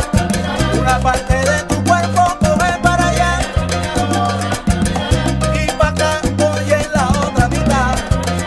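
Salsa band playing: a repeating bass figure under busy percussion, with melodic instrument lines over the top.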